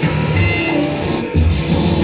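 A live band playing loud music, with guitar over heavy low bass notes that hit about half a second in and again around a second and a half in.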